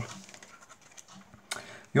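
Faint handling of a deck of playing cards, soft rustles and scrapes, with a single sharp click about one and a half seconds in.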